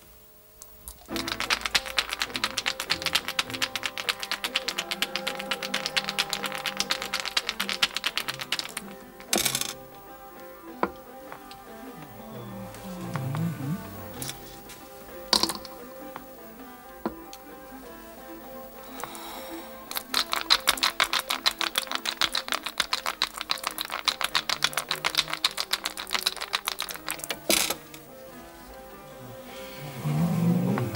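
Dice rattled fast in a cup, in two long runs of dense clicking. Each run ends with a sharp knock as the dice are thrown down, and there is one more knock in the middle. A steady musical drone holds underneath.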